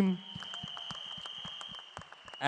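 Applause: many hands clapping in a dense, even patter after a spoken call for a round of applause, with a thin steady high tone underneath.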